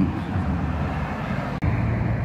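Low, steady street rumble of road traffic, with a brief dropout about one and a half seconds in where the recording is cut.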